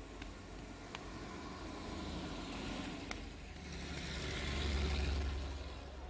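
A motor vehicle passing on a street: an engine rumble and road noise that grow louder, peak about five seconds in, then fade.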